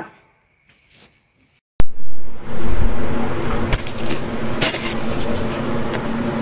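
Near silence, then about two seconds in a few loud knocks and the abrupt start of a steady hum and hiss from a running electric motor.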